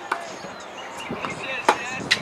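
Tennis ball struck by racquets in a baseline rally: a fainter pop right at the start, then a louder, sharp pop about a second and a half later.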